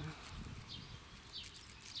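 Faint chirping of small songbirds in the background, several short high calls, over a low rumble on the microphone.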